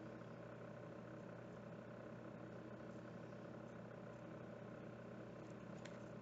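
Faint steady room hum with a light hiss underneath, and a faint click near the end.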